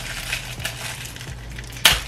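Thin plastic wrapper crinkling as it is pulled off disposable plastic cutlery, with one sharp snap near the end.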